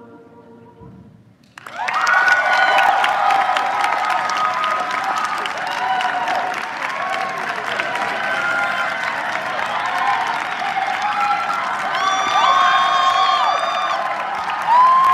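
The last notes of a choir song dying away, then audience applause breaking out suddenly about one and a half seconds in, with whoops and cheers over it that carry on steadily.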